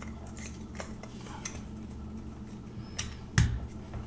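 Small clicks and knocks of hard plastic as a small DC motor is worked into an electric grinder's plastic housing, with a louder knock about three and a half seconds in.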